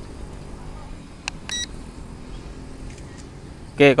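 A click and then one short, high electronic beep about a second and a half in, right after the photo command is given to the drone, over a steady low background rumble.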